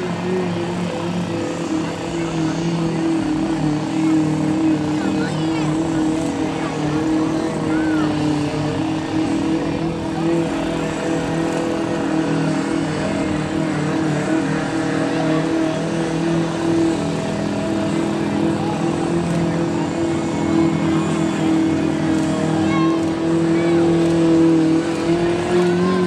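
Lifted mud-bog pickup truck's engine held at high, steady revs, the pitch wavering only slightly as the truck churns through deep mud, with a slight rise near the end.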